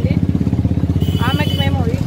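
A nearby engine idling: a loud, steady low rumble with a rapid, even beat, running under a woman's voice that starts about a second in.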